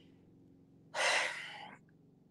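A single audible breath from a woman, about a second in and lasting under a second, in a pause between sentences.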